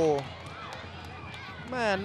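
A lull in Thai football commentary: a man's drawn-out 'wow' trails off at the start, then faint open-air stadium ambience over a steady low hum, and the commentary picks up again near the end.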